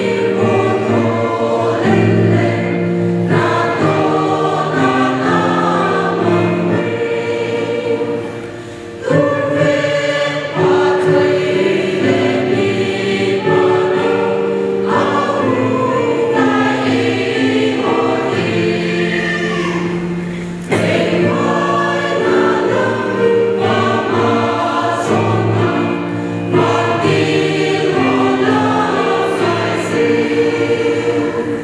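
Mixed choir of women and men singing a Christian hymn in parts, holding chords and moving from phrase to phrase, with a short breath between phrases about eight seconds in.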